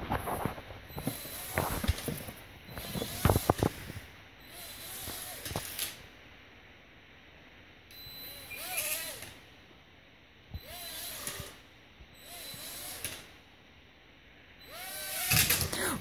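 Small toy quadcopter's motors whirring up in short bursts about a second long, each a rising and falling whine over a hiss of propellers, four times with quiet gaps between. Near the end they spin up louder. A few knocks and clicks come early on.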